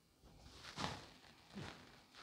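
Two faint, soft scraping rustles as the last pieces of chopped red onion are pushed off a wooden cutting board into an oiled frying pan, about a second in and again near the end.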